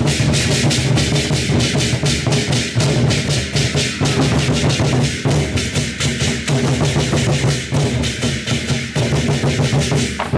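Vietnamese lion dance drum ensemble: several large barrel drums beaten together in a fast, continuous rhythm, with hand cymbals clashing on the strokes.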